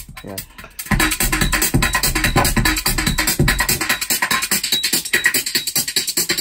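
Electronic music from a live synthesizer rig played through a mixer, coming in loud about a second in with a fast, dense pulse and heavy bass.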